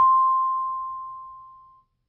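A single bell-like musical note struck once, ringing out and fading away over nearly two seconds.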